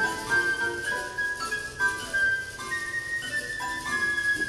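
Live chamber music: a flute playing a simple, jingle-like melody of short held notes that step up and down, with plucked guitar underneath.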